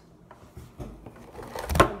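Faint handling and pouring noises, then near the end a single sharp clatter as the camera falls over onto the counter.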